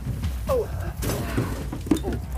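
Handling noise as a small upright freezer cabinet is gripped and lifted by hand, ending in one sharp knock near the end.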